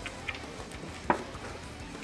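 Faint background music, with one sharp knock about a second in as a plastic gallon water jug is set down on the table.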